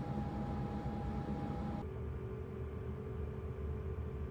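Cooler Master MasterAir G100M CPU air cooler's fan running with a steady whir and a thin high hum. About two seconds in, the sound switches to the MasterLiquid ML240L liquid cooler running, a duller steady hum with a lower tone.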